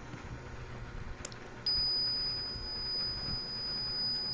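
A button click, then a continuous high-pitched electronic tone starts suddenly about one and a half seconds in and holds steady: a Kanji Kin Gold V6 Radar metal locator being switched on.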